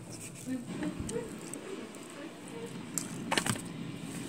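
Faint background voices, with a quick cluster of sharp clicks a little over three seconds in.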